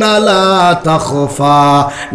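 A man's voice chanting in a melodic, drawn-out style, the sung passage of a Bangla waz sermon. It runs as a few long held notes, stepping down in pitch, with short breaks between phrases.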